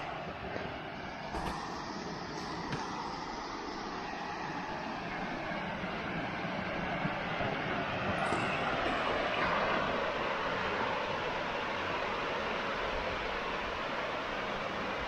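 Glacial meltwater stream rushing and splashing down a rocky cascade: a steady rush of water that grows louder toward the middle and then holds.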